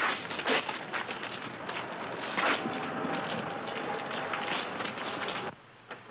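Outdoor street background noise, a steady hiss with scattered clicks and knocks, which cuts off suddenly about five and a half seconds in.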